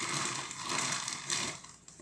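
Rustling and clicking of small plastic bottles and their packaging being rummaged through and handled, dying away about one and a half seconds in.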